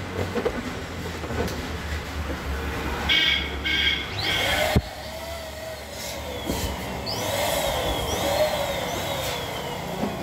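Inflated latex balloons squeaking and rubbing as they are pressed against one another and the frame pole, with a rasping patch in the middle and gliding squeals later, over a steady low hum. A sharp click comes just before the middle.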